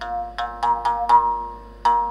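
Mongongo (Gabonese mouth bow) played: its string is struck about seven times in a quick uneven rhythm, the loudest just past the middle, each note ringing and dying away. The mouth shapes which overtone sings out, so the melody moves from note to note over one steady fundamental.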